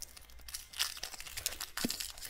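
Plastic candy wrapper crinkling and being torn open: a run of small crackles and clicks, with two sharper snaps, one about a second in and one near the end.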